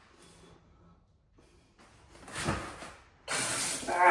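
Close rustling and rubbing of clothing and handling noise against the camera: a short burst about halfway through, then a louder, even rustle in the last second.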